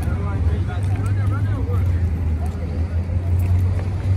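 City street noise: a steady low rumble of passing traffic, with faint voices of people nearby.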